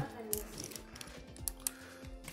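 A few light, scattered clicks and taps from a smartphone's plastic case being handled in the hand.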